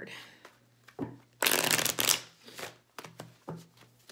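A Rider-Waite tarot deck being shuffled by hand. A loud rush of cards comes about a second and a half in and lasts about half a second, followed by a softer one and a few light flicks of cards.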